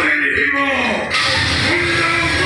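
A man's voice over stage loudspeakers, delivering a drawn-out line with music behind it: a falling phrase, then a long held note near the end.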